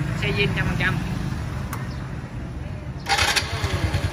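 Honda Wave 100's single-cylinder four-stroke engine idling steadily on an aftermarket Takegawa CDI and ignition coil, with a brief louder burst of noise about three seconds in.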